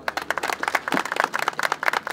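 A small group of people applauding by hand: many quick overlapping claps in a steady run.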